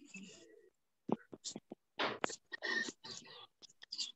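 Soft, indistinct speech close to a whisper, with a breathy hiss at the start, then short broken murmured phrases.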